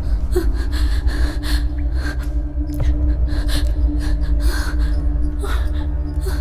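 A woman gasping and panting in fear, about two breaths a second, over a low droning horror score with a steady hum.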